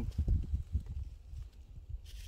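Wind buffeting the microphone: low, irregular rumbling with soft knocks, strongest in the first half-second and easing after about a second.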